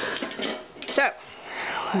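Handling noise from a plastic basket holding a book fitted with plastic spring clamps, moved on a wooden tabletop: light knocks and clicks, then a scraping rustle in the second half. A short vocal sound comes about a second in.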